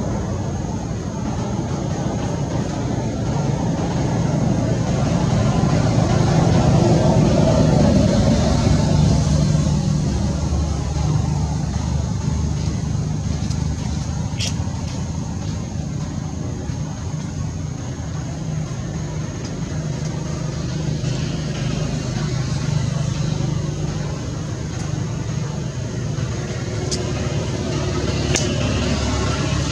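Steady low rumble of road traffic, swelling for a few seconds near the middle.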